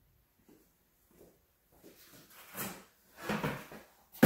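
Handling noises from a plastic five-gallon bucket of trapping tools being picked up and carried: tools clatter and knock inside it. The knocks are faint at first and get louder over the last second and a half.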